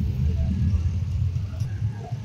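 Low, steady rumble of a motor vehicle engine running close by, with faint voices.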